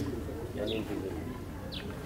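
Faint background birdsong: a dove cooing softly, with a couple of brief high chirps from small birds.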